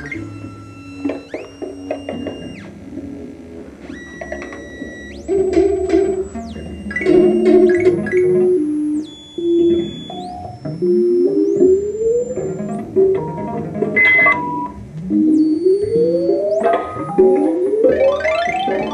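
Motion-triggered electronic soundscape from a Max/MSP patch on a laptop. Synthesized tones come in layers: high held tones step up and down, short runs of mid-pitched notes play, and from about halfway on several rising swoops repeat.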